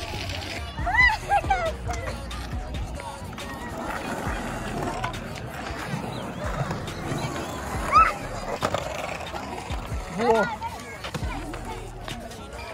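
Skateboard wheels rolling over a rough concrete skate park surface: a steady low rumble.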